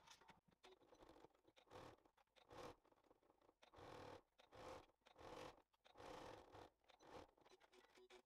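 Near silence with a string of faint, short rustles and scrapes of fabric being handled and slid into place at the sewing machine; the machine itself is not heard running.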